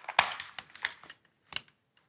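Several sharp metal clicks and clinks of rope access hardware, karabiners and descender on a harness, during a short descent on a rope. They fall in the first second, and one faint click comes about a second and a half in.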